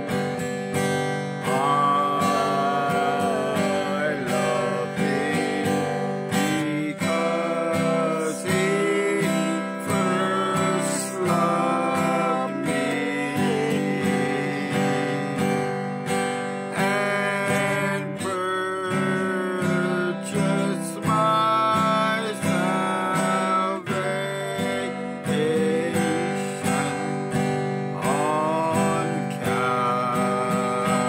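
Acoustic guitar strummed steadily as accompaniment to a man singing a slow gospel song.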